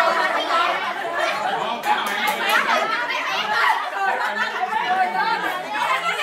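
Many people chattering and talking over one another at once in a crowded room.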